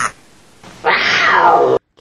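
A loud, high cry lasting about a second, its pitch falling, cut off suddenly near the end.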